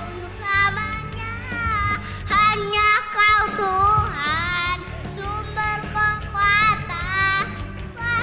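A young boy singing an Indonesian worship song into a microphone over accompanying music, his voice wavering and sliding between held notes.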